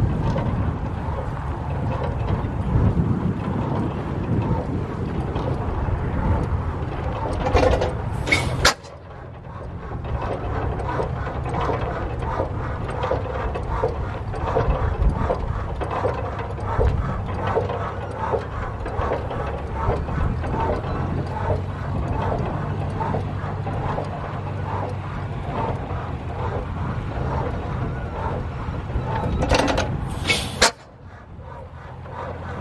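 Antique flywheel stationary gas engines running, a regular rhythmic mechanical beat over a low rumble. The sound breaks off abruptly about nine seconds in and picks up again at once.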